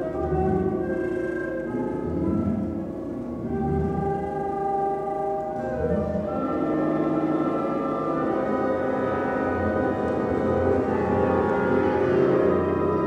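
Contemporary orchestral music for large wind orchestra with double basses and Hammond organ: held, dissonant chords of many sustained notes. About halfway through it shifts to a denser chord and slowly grows louder.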